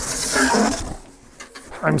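Cardboard and packing rustling and scraping as hands reach deep into a large shipping box, dying away about a second in.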